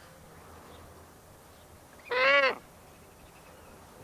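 A European eagle owl gives a single short call about two seconds in, rising and then falling in pitch.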